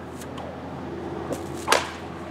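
A bullwhip cracks once, sharply, about three-quarters of the way in: a Cattleman's crack, thrown overhand and cracking in front of the thrower.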